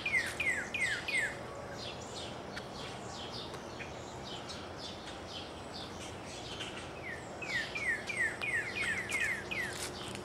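Songbirds singing: a rapid series of falling whistled notes, about four a second, near the start and again near the end, with other higher chirps between them over a steady outdoor background.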